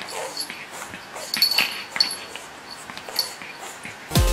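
Pug puppy gnawing on a chew stick, with irregular chewing clicks and several short, high squeaky sounds from the puppy.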